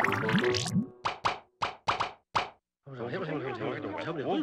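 A cartoon music passage breaks off into a quick run of five or six plopping sound effects about a second in. After a short silence, wavering cartoon voices start up near the end.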